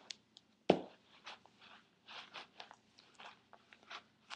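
Scuffing and rustling of a Nike Mercurial soccer cleat being pulled onto a foot that no longer fits it, close to the microphone, with one sharp knock under a second in.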